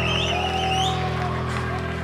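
Steady low hum from the band's stage amplification between songs, with a thin wavering high whistle-like tone that climbs in pitch about a second and a half in.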